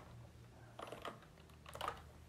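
Faint keystrokes on a computer keyboard: a few quick clicks about a second in and another short cluster near the end.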